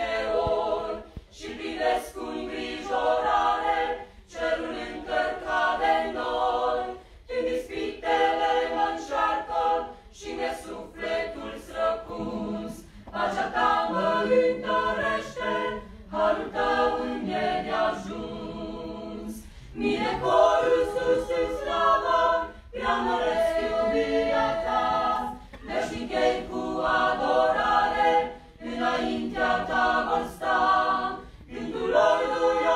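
Small mixed choir of men's and women's voices singing a religious song a cappella, in phrases separated by short breaths.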